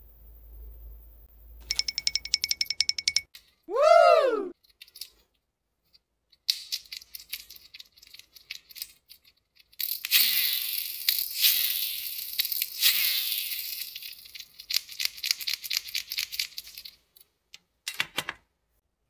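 Rapid clicking at first, then a short whistle-like tone that slides up and back down. From about six seconds in comes a long stretch of rapid clicking and whirring from a plastic toy car's wheel mechanism as it is handled.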